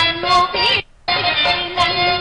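A woman singing a Telugu stage verse (padyam) with wavering ornamented notes over steady harmonium-like accompaniment. All sound cuts out briefly just before halfway, then resumes.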